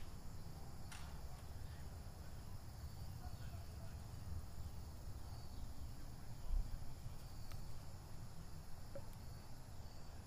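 Quiet outdoor ambience: a low rumble of wind or handling on the microphone under a steady high insect hum, with a few faint clicks and one soft thump about six and a half seconds in.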